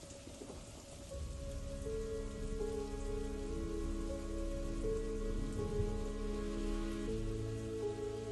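Steady rain falling, with a soft music score of long held notes coming in about a second in and building, and a deeper bass note joining near the end.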